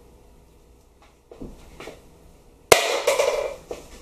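Two soft knocks, then a sharp clack about two and a half seconds in, followed by a second of rattling ring: the emptied coconut milk can being set down on the stove top or counter.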